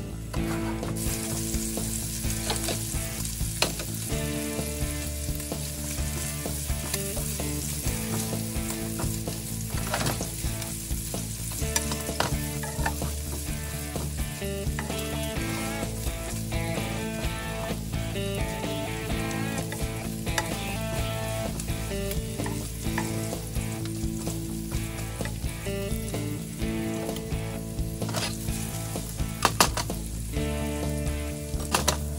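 Diced bacon frying in its rendered fat in a frying pan, a steady sizzle that starts about a second in, with occasional sharp clicks as it is stirred.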